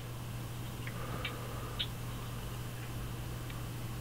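A few faint small clicks, about a second in and again a little later, as an SD card is pushed into a Nikon D90's card slot, over a steady low electrical hum.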